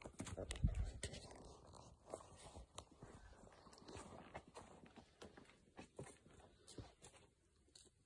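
Footsteps crunching through leaf litter and undergrowth on a forest floor, an irregular run of crunches and clicks that thins out and stops about seven seconds in.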